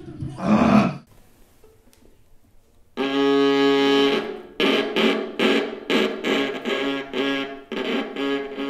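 Viola played with the bow. It starts about three seconds in with a long, low held note, then moves into short repeated bow strokes, about two or three a second. A brief louder sound comes just under a second in, followed by a near-quiet gap.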